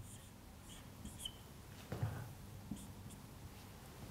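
Faint strokes and brief squeaks of a felt-tip marker drawing on a whiteboard, followed by a few soft handling sounds.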